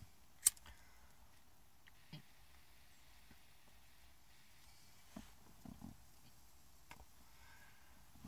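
Quiet vehicle interior with small handling clicks as an object is handled: one sharp click about half a second in, then a few fainter clicks and soft rustles.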